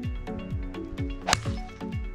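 Background music with a steady beat, and one sharp crack of a two iron striking a golf ball off the tee about a second and a half in.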